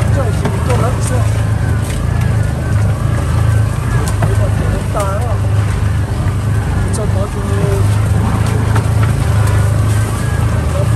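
A vehicle's engine droning steadily, heard from inside the cab while driving, with occasional small clicks and knocks from the body.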